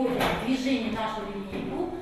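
Speech: a person talking, the words not clearly made out.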